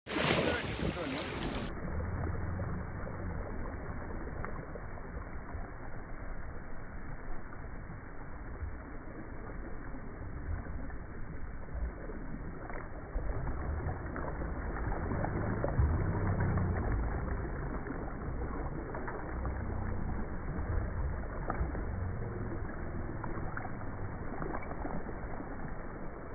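Shallow sea water washing over sand around the feet, with wind rumbling on the phone microphone.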